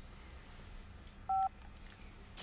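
A mobile phone gives one short keypad-style beep, two notes sounding together, about a second and a half in, over faint room tone. It comes as the call cuts out.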